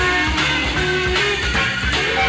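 Live psychedelic blues-rock jam: a lead electric guitar holds notes and slides between them over a steady beat of drums and bass.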